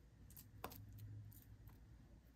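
Near silence with a few faint soft clicks and taps from hands pressing and patting wet falafel mixture into a round patty.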